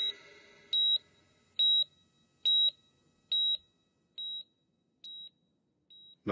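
Hospital heart monitor beeping steadily: a short, high single-tone beep a little under once a second, the last few beeps growing fainter.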